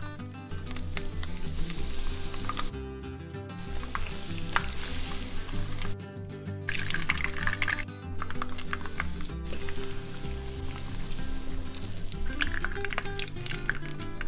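Breaded ham-and-cheese rolls frying in a skillet of hot oil, a steady crackling sizzle that drops out briefly about 3 and 6 seconds in, with background music underneath.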